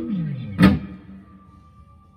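Fender American Ultra Stratocaster electric guitar with noiseless single-coil pickups, played clean through an amplifier. Two sharp picked strikes about half a second apart, each with its pitch sliding down, then the last notes ring out and fade away.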